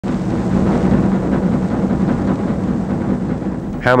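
Marching snare drum playing a steady, unbroken roll.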